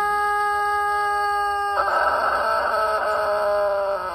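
A steady, unwavering held tone gives way suddenly, about two seconds in, to a rooster crowing: one long, rough call that slowly falls in pitch.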